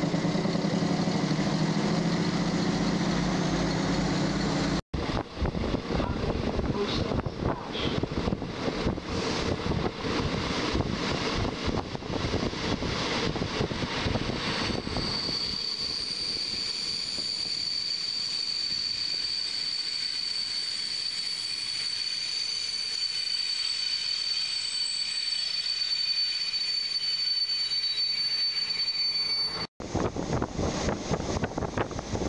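A passenger train heard from on board. First a low, even running hum, then after a cut a rattling, clattering stretch of wheel and carriage noise. From about halfway a quieter rolling noise carries a steady high-pitched whine.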